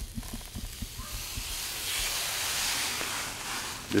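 Protective plastic film being peeled off a large privacy-filter sheet: a long, hissing peel that builds from about a second in and eases off near the end.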